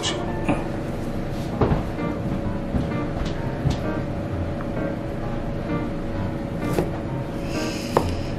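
Background music playing steadily, with a few short knocks of a knife passing through a block of wagyu and striking the plastic cutting board.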